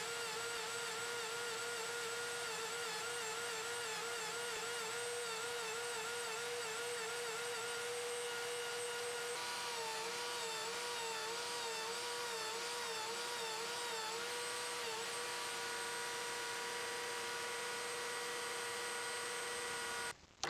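Small electric belt sander with an 80-grit belt running at top speed while wooden coasters are sanded against it. Its steady motor whine dips and wavers in pitch over and over through the middle stretch.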